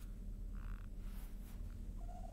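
Faint steady low hum on an open live-broadcast audio line, with one brief faint sound about half a second in.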